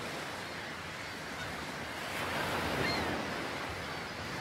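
Wind rushing over the microphone, a steady noise that swells a little in the middle, with a few faint short high tones.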